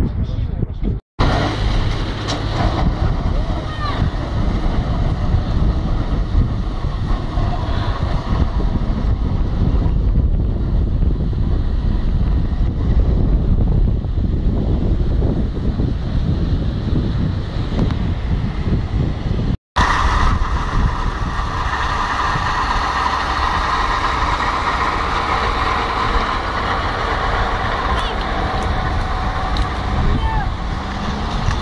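Road traffic on a wet road: cars and a bus driving past with steady tyre and engine noise. The sound cuts out abruptly twice, about a second in and about two-thirds of the way through.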